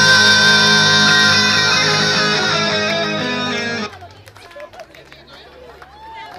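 Rock song ending on a long held electric guitar chord that slowly fades, then cuts off abruptly about four seconds in. Faint crowd noise follows.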